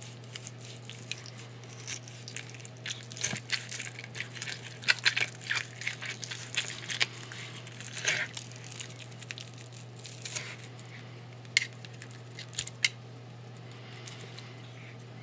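Steak knife sawing through a bacon-wrapped filet, with crisp crackling and tearing of the bacon and sharp clicks of the knife and wooden fork against the board. The sound is busiest in the middle and thins to a few isolated clicks near the end.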